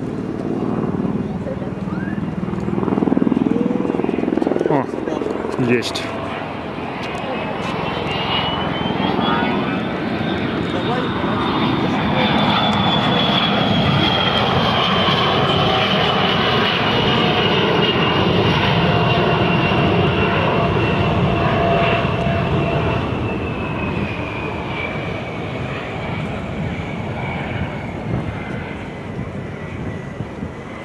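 Beriev Be-200 amphibious jet's two Progress D-436TP turbofan engines in a low display pass, running loud and steady. A high engine whine climbs in pitch over the first ten seconds as the jet approaches, then slowly falls as it passes and banks away.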